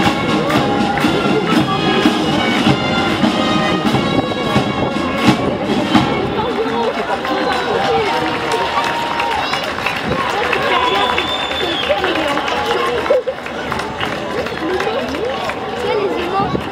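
Parade band music with regular drumbeats, giving way about six seconds in to a crowd of spectators talking.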